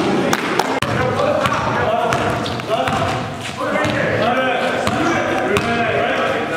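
A basketball bouncing on a gym floor in repeated sharp knocks, with players' voices calling out in the gym.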